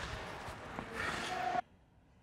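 Indoor ice rink ambience: echoing arena noise with faint distant voices, cutting off abruptly to silence about one and a half seconds in.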